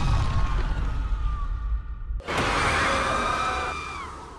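Horror-trailer sound design under the title card: a low rumble with thin, wavering high tones, then a sudden hit about two seconds in that opens into a dissonant, sustained high drone, which begins fading near the end.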